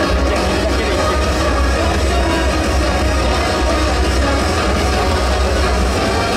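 Music with a strong, steady bass, playing without a break.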